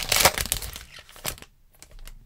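Foil wrapper of a Donruss Optic basketball card pack crinkling as it is peeled open and the cards pulled out, busiest in the first second and fading out by halfway through.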